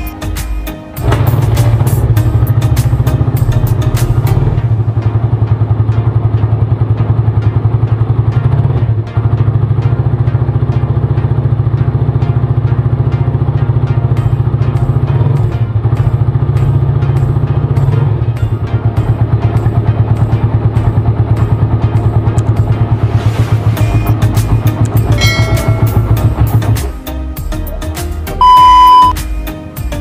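Suzuki Satria FU single-cylinder motorcycle engine starting about a second in and running steadily, stopping a few seconds before the end. A short high beep follows near the end.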